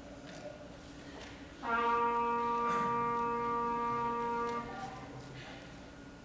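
A band wind instrument sounds one long, steady held note. It starts about a second and a half in and stops before five seconds, with faint hall noise before and after.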